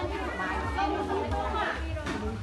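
Market chatter: several nearby voices talking over each other, with a steady low hum underneath.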